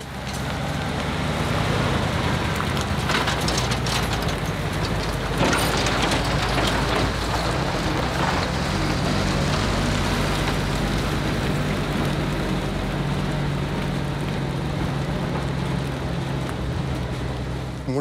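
Truck-mounted crane's engine running steadily as the truck drives, a constant low hum under road and engine noise that comes up just after the start.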